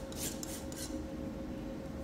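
Metal palette knife scraping and spreading sculpture paste on a board in a few short rasping strokes.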